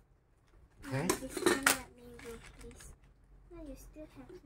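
A metal knife scraping and clinking against a container, loudest in a burst of about a second that starts about a second in.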